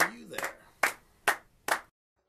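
A man clapping his hands: single sharp claps, the last three about half a second apart, after a short vocal sound at the start.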